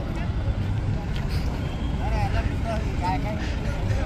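Wind buffeting the microphone, a heavy, uneven low rumble. Faint voices can be heard beneath it about halfway through.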